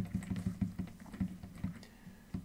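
Faint, dull computer keyboard clicks, about five a second in an uneven rhythm, as video footage is stepped frame by frame.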